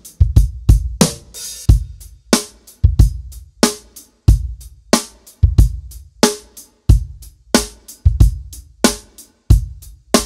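A drum kit groove played on a Mapex Armory Tomahawk snare drum, with kick drum and cymbals, in a steady run of sharp hits. The snare is tuned medium at first and tight from about halfway through.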